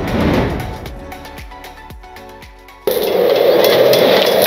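Background music with a swelling hit at the start that fades away, then an abrupt cut to loud, steady crackling from electric arc welding on a steel wheelbarrow tray.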